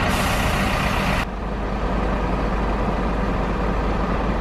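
A truck's air brakes letting out a loud hiss of compressed air for just over a second, cutting off sharply, over the steady low running of a diesel engine.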